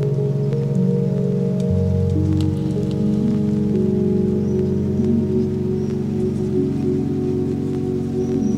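Ambient music: held low drone tones that step slowly from pitch to pitch, over a sparse, faint crackle of clicks.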